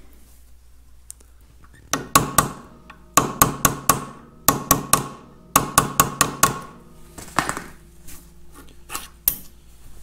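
Hammer tapping a new steel pin into a cast control handle clamped in a bench vise: quick runs of light metallic taps, several a second, with a ringing tone. The taps start about two seconds in and thin out to a few softer ones near the end.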